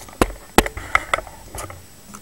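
A few separate sharp plastic clicks and knocks from a 3x3 speed cube being handled on a tabletop, the loudest about half a second in.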